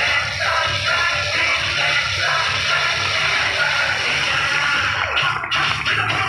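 Dance music playing loudly with a steady beat.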